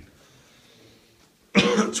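Faint hallway room tone, then a single loud cough from a man about a second and a half in.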